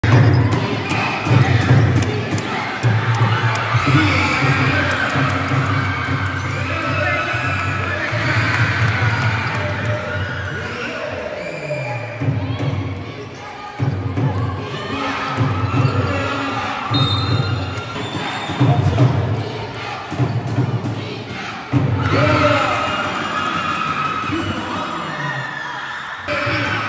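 Basketball dribbling and bouncing on an indoor court during a game, with players' and spectators' voices calling out around it.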